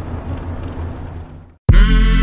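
Steady low rumble of a car's cabin on the move, fading out about three-quarters of the way in. After a moment of silence, loud music with sustained notes starts near the end.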